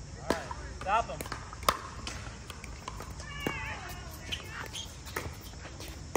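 Pickleball paddles striking a plastic pickleball in a rally: a series of sharp pops at irregular intervals, the loudest about a second and a half in, with short vocal calls from the players in between.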